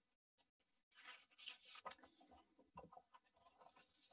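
Near silence: room tone with a few faint rustling and ticking sounds from about a second to three seconds in.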